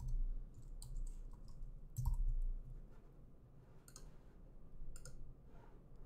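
A few scattered clicks of computer keyboard keys and a mouse, spaced irregularly, with a slightly louder one about two seconds in.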